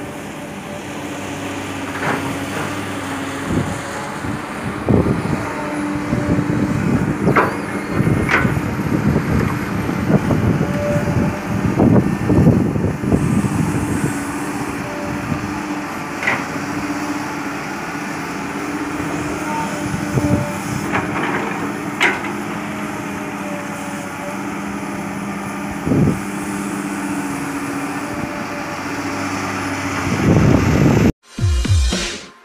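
Diesel engine of a Komatsu PC200 hydraulic excavator running steadily as it digs earth and gravel. Irregular sharp knocks from the bucket and the soil and stones it moves break in every few seconds.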